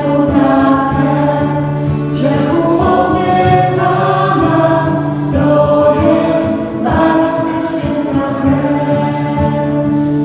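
Choir singing a slow religious song in sustained chords over a steady low note, the harmony shifting every second or two.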